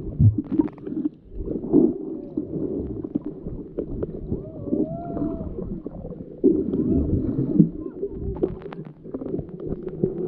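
Muffled underwater sound from a submerged camera: uneven low rumbling and gurgling of water and bubbles, with a few wavering tones about halfway through and scattered clicks.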